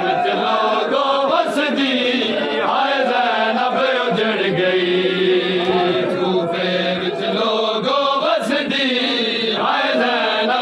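A crowd of Shia mourners chanting a Punjabi noha (mourning lament) together, many voices in unison in a rising and falling melodic line.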